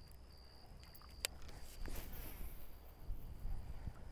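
An insect trilling steadily at a high pitch, the trill broken into short stretches, with one sharp click about a second in.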